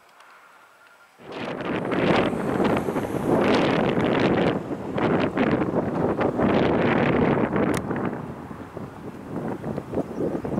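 Gusty wind buffeting the microphone, starting suddenly about a second in and easing off somewhat near the end.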